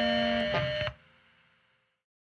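Distorted electric guitar and band holding a final sustained chord at the end of a crustgrind punk song. It cuts off just before a second in, leaving a brief faint tail and then silence between tracks.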